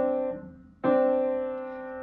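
A left-hand D7 chord on the piano (F sharp, C and D) fades, then is struck again just under a second in and held.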